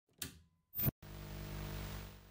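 Old CRT television sound effect: two brief bursts of noise in the first second, then a steady low electrical buzz with hiss as the set comes on.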